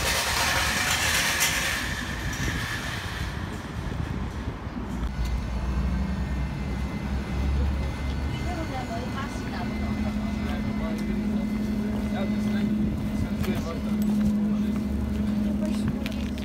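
City street ambience: road traffic and the voices of people passing by, with a steady low hum that sets in about halfway through.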